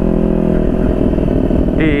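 Motorcycle engine running at a steady cruising speed, its note holding an even pitch; a rougher low rumble joins it from about half a second in.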